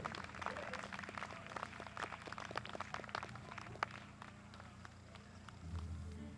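Sparse, light applause from a small audience, dying away after about four seconds, over a faint steady hum. A low rumble swells near the end.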